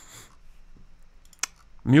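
A single sharp click about one and a half seconds in, against faint room noise.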